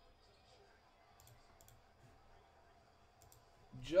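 A few faint, sharp clicks, heard in pairs, over a quiet room; a man's voice starts near the end.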